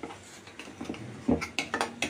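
Sliced onions and green chillies frying in oil in an iron kadai with a faint, steady sizzle, and a few light clicks and knocks against the pan in the second half.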